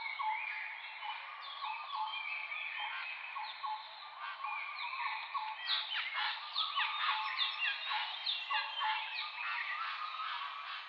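Many birds chirping and calling together in a dense chorus of short whistled notes and quick pitch sweeps, growing busier and louder from about halfway.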